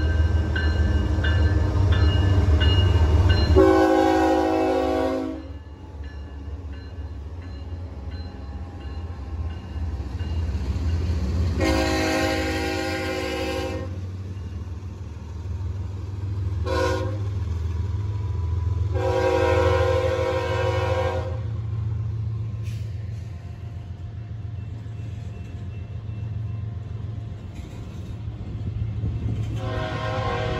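Kansas City Southern diesel freight locomotives passing close with a steady low engine and wheel rumble. The lead unit's multi-chime air horn sounds long, long, short, long, the grade-crossing signal, and starts another blast at the very end.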